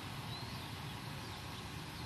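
Outdoor ambience: a few faint bird chirps over a steady low rumble.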